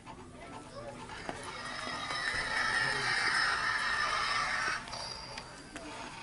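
Sound effect from a plush stick-animal toy, a noisy sound that swells for about three seconds and cuts off suddenly.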